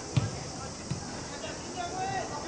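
A football kicked with a sharp thump just after the start, then a lighter touch on the ball about a second in, with players shouting on the pitch.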